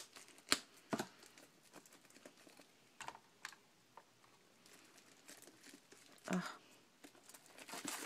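Scissors snipping and cellophane shrink-wrap crinkling as a wrapped pack of paper cards is cut open and unwrapped. There are several sharp snips and clicks in the first few seconds, then soft, quiet crinkling of the plastic.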